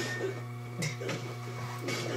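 Soundtrack of a film fight scene in an industrial setting, playing from a computer: a steady low mechanical hum with soft thuds about once a second.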